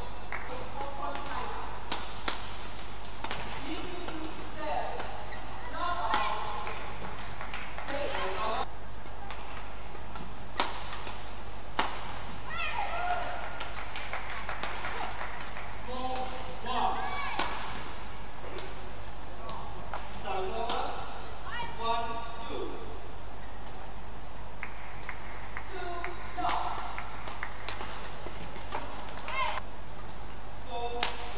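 Badminton rallies: sharp clicks of rackets striking the shuttlecock, mixed with short high squeaks of players' shoes on the court mat, over a steady low arena hum.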